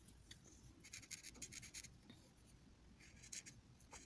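Felt-tip marker rubbing on paper: faint scratchy strokes in a cluster about a second in and again a little past three seconds.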